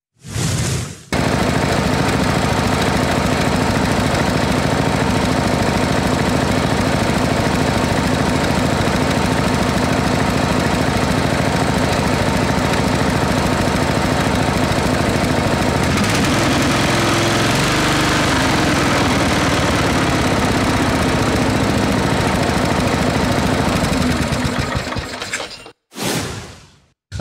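Briggs & Stratton 17.5 hp overhead-valve lawn tractor engine running with a rapid, even firing beat, just after its valve lash has been adjusted. Its sound shifts about two-thirds of the way through and fades out near the end.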